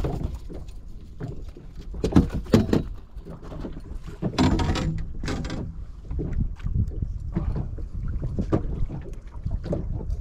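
Wind rumbling on the microphone on an open boat, with a few sharp knocks about two seconds in and a louder rattling clatter a little later as a landed fish is worked out of a landing net on the deck.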